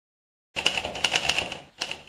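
Typewriter keystroke sound effect: a rapid run of key clicks starting about half a second in, with a brief pause near the end, as letters are typed out on screen.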